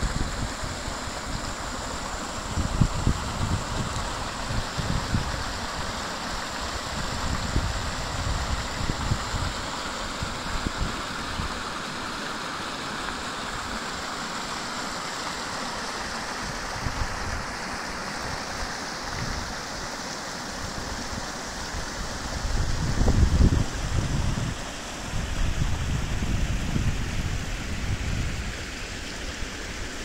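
Shallow stream running and splashing over rocks and small cascades: a steady hiss of rushing water. Irregular low rumbles come and go over it, loudest a little over 20 seconds in.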